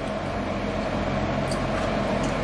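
A steady low mechanical hum holds at an even level throughout.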